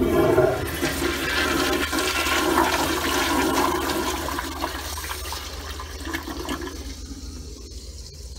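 American Standard Afwall toilet flushing: a sudden rush of water swirling through the bowl, loudest in the first second, easing off after about five seconds and still draining at the end.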